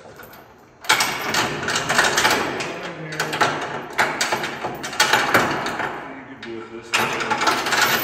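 Metal securement chain rattling and clanking as it is handled and hooked up. It comes in two spells, a long one starting about a second in and a shorter one near the end, with a short break between them.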